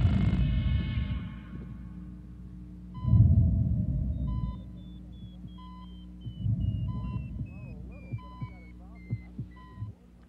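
Film soundtrack of electronic sound effects: low pulsing rumbles that swell three times, with a short electronic beep repeating about every second and a half and a higher string of beeps stepping steadily down in pitch.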